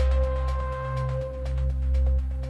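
Electronic dance music from a DJ mix, in the melodic house and techno style: a deep, continuous bass under a held synth tone, with quick, evenly spaced hi-hat ticks. A higher synth note drops out a little over a second in.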